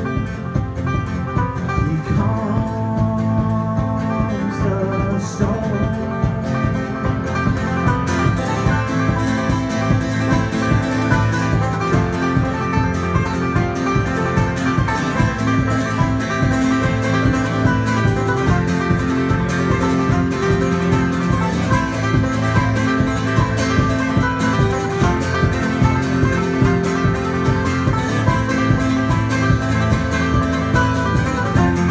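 Live acoustic band playing a country-bluegrass song: banjo picking and acoustic guitar strumming over sustained keyboard, in a steady rhythm that gets fuller about eight seconds in.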